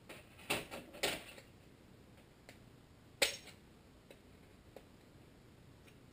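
A few light metallic clicks from pliers working a wrist-pin retaining clip into its groove in the piston's pin bore: two close together early, then a sharper single click a little after three seconds, as the clip seats.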